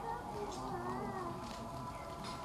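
Several voices chanting Vedic mantras, faint and sustained, their pitches gliding slowly and overlapping.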